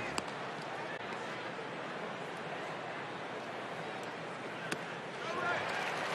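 Ballpark crowd murmur with one sharp pop near the end, the 1-2 pitch into the catcher's mitt. The crowd then begins to cheer a strikeout.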